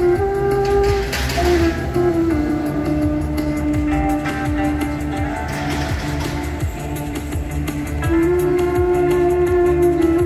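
Wooden end-blown flute playing a slow melody of long held notes, over a recorded backing track with guitar and a steady bass pulse from a portable speaker.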